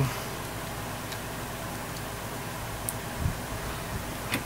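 Steady background hiss with a few faint clicks as small servo-lead plugs are handled and pushed into the pins of an RC helicopter's flybarless control unit.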